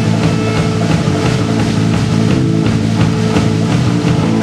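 Live rock band playing: two electric guitars, bass guitar and drum kit, with a steady drum beat under the guitars.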